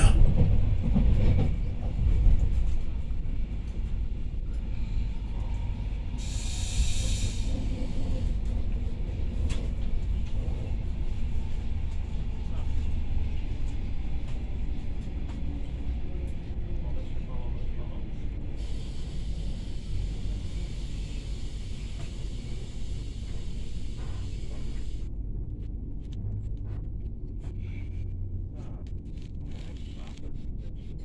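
Running noise of a Pesa SunDeck double-deck passenger coach heard from inside its lower deck: a steady low rumble that grows gradually quieter as the train slows for a station. A short hiss comes about six seconds in.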